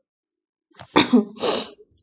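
A woman's short, sudden burst of breath and voice, sharp at the start, just under a second in, followed by a second breathy rush of air.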